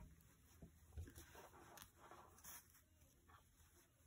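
Near silence, with faint soft rustles of hands drawing a needle and yarn tail through the floats inside a knitted wool hat as a loose end is woven in.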